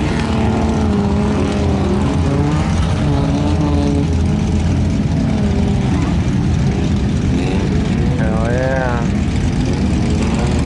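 Suzuki Samurai engine working in a deep mud hole, its pitch rising and falling slowly as the throttle comes on and off. A voice calls out briefly near the end.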